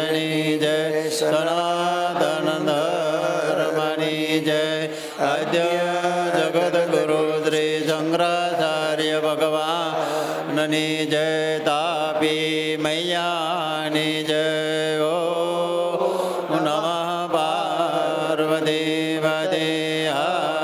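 Devotional chanting: a voice singing long, wavering notes over a steady low drone.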